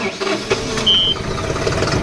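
John Deere CRDI tractor's diesel engine starting, catching about half a second in and then running steadily. A short high beep sounds about a second in.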